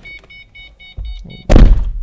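A car's electronic warning chime beeping rapidly and evenly, about six beeps a second. It cuts off about one and a half seconds in, at the moment a heavy thunk lands; the thunk is the loudest sound.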